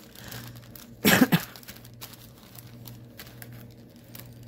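A single short cough about a second in, over faint rustling of printed cross-stitch fabric being handled.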